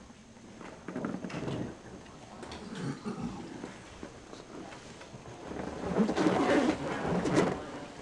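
Irregular low rumbles, rustles and soft knocks close to the microphone, loudest about six to seven and a half seconds in: movement and handling noise in a hearing room waiting to start.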